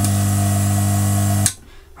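Hot air gun running with a steady hum and rush of air, switched off about three-quarters of the way through so that the sound cuts off suddenly.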